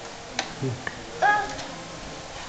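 Light plastic clicks and knocks of a toy truck being pushed and handled on a rug, then a short high-pitched squeal from a toddler a little over a second in, the loudest sound.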